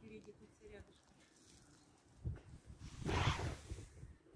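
A lion snarling: low pulsing growls build to a short, louder raspy hiss about three seconds in.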